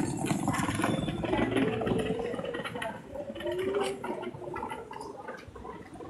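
A person's voice, low and rough, without clear words, with a few rising and falling pitch glides.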